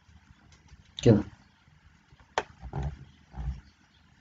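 A man's voice says a single word about a second in. A sharp click follows, then a few short low sounds.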